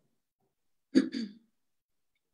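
A person clearing their throat in two quick bursts about a second in.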